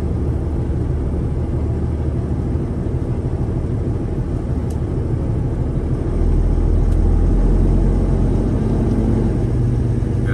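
Semi-truck diesel engine running at low speed, heard inside the cab as a steady low rumble that grows louder about six seconds in.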